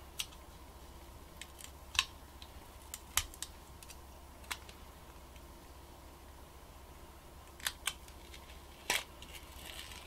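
Aluminium foil shielding being peeled off a laptop-size hard drive by hand: a handful of faint crinkles and sharp clicks, scattered irregularly, over a low steady hum.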